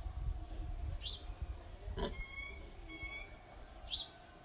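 Birds calling: a short rising chirp about a second in and again near the end, with two short calls in between, over a low rumble that dies away about halfway through.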